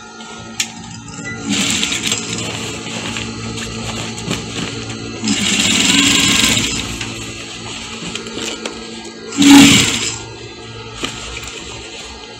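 Background music with a sewing machine stitching in short runs over it, the loudest run coming shortly before the end.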